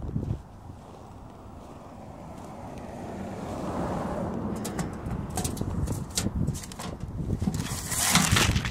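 Footsteps in snow, a run of short irregular crunches starting about five seconds in, over low wind rumble on the microphone. A broad swell of noise builds and peaks about four seconds in.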